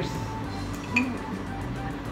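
A light clink of two drink bottles touching in a toast, once about a second in, over soft background music.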